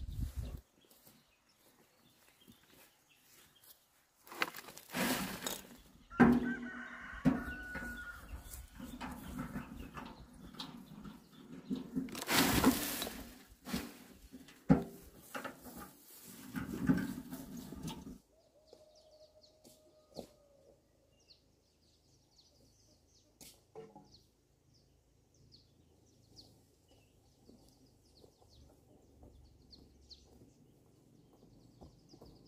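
Garden soil being tipped and worked: a run of loud, irregular scraping and thudding bursts that stops suddenly about two-thirds of the way through. Then faint birds chirping.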